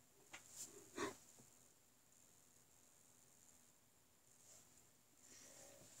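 Near silence: room tone, with a few faint brief sounds in the first second or so.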